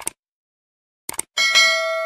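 Subscribe-button animation sound effect: a mouse click, two more quick clicks about a second later, then a bright notification bell chime that rings on and slowly fades.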